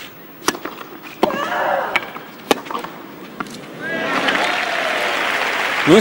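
Tennis rally on a clay court: about five sharp racket-on-ball hits, one followed by a player's long cry. About four seconds in, crowd applause and cheering rise as the point ends.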